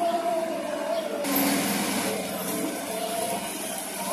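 Outdoor street ambience: a vehicle engine running under a steady rushing hiss that turns louder and brighter about a second in, with faint voices.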